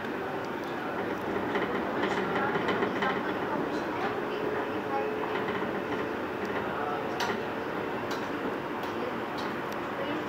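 Cabin noise of a Cercanías Madrid commuter train running at speed: a steady rumble with scattered clicks from the wheels over the rail.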